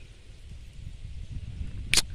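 Low, steady rumble of wind buffeting a phone microphone outdoors, growing slightly louder, with a short sharp click near the end.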